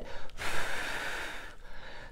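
A woman draws one audible breath in through her mouth, lasting about a second, in a pause between phrases.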